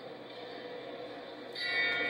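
Boxing ring bell ringing sharply about a second and a half in, signalling the start of the round.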